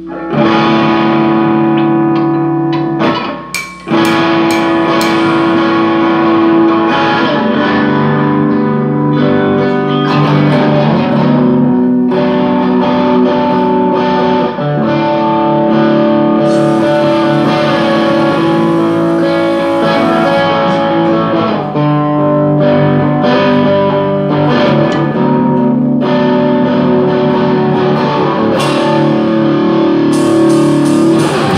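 Instrumental music: guitar played through effects, holding chords that change every few seconds, with a short break about three seconds in.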